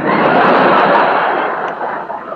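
Live studio audience laughing at a punchline, a loud wash that starts at once and fades over the last half second. It comes through the narrow, muffled sound of a 1939 radio broadcast recording.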